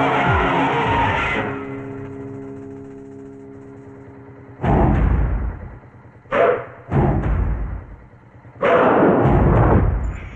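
Action film background score: a loud dense passage fades into a held chord, then sudden loud drum hits break in about five, six and seven seconds in, with a longer loud burst near the end.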